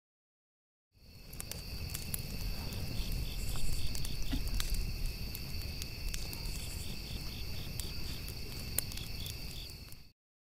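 Night insect chorus of crickets: steady high trilling with a rapid pulsed chirp in between, over a low rumble and a few faint clicks. It starts about a second in and cuts off abruptly at the end.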